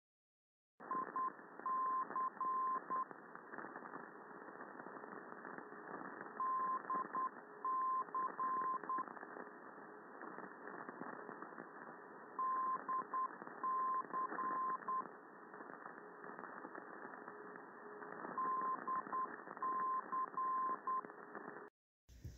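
Non-directional beacon received on a software-defined radio in AM mode: a tone keys the beacon's Morse-code identifier in short and long beeps, the group repeating about every six seconds, over a steady hiss of radio static.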